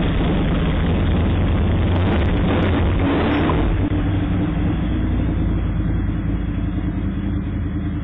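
Ducati 996 motorcycle's V-twin engine running steadily, heard through a doorbell camera's microphone, which makes it sound thin and cuts off the higher tones.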